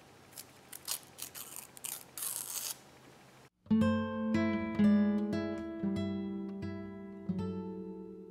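Brief rustles and crackles of washi tape and paper being handled for about three seconds. Then, after a sudden cut, plucked acoustic guitar music with ringing, decaying notes, louder than the handling.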